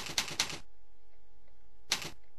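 Computer keyboard typing: a quick run of keystrokes in the first half-second, then one more click near the end.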